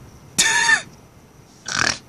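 Two short breathy vocal noises from a person, about a second apart.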